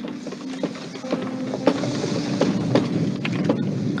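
Film soundtrack: held music notes under a hissing wash, with a run of sharp crackling clicks through it.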